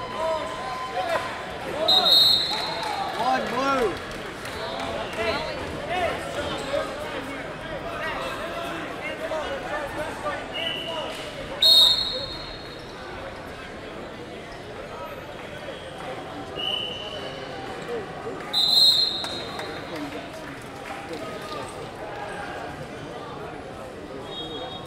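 Sports hall full of voices, with coaches and spectators calling out. Short, shrill referee's whistle blasts sound about two seconds in, near the middle and a few seconds later. Fainter whistles come from other mats in between.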